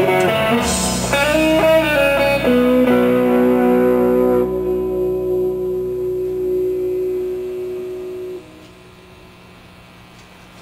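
Electric guitar through an amplifier ending a song: a few bent lead notes, then a final chord that rings out for several seconds and is cut off suddenly about eight seconds in, leaving a faint steady hum.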